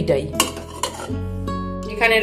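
A glass lid knocks and clinks against a steel cooking pot as it is lifted off, with a sharp click about half a second in and a lighter one after it, over background music.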